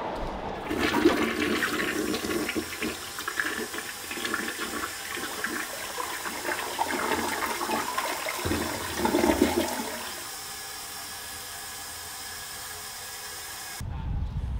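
Toilet flushing: water rushes and gurgles for about ten seconds, then settles to a quieter steady hiss.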